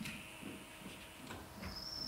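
Faint room tone with a few soft knocks, and a brief thin high whine near the end.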